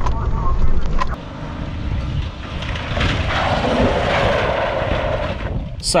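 Cabin noise of a 1993 Ford Explorer on the move, a low engine and road rumble that cuts off about a second in. A rushing noise then swells for a couple of seconds and stops suddenly.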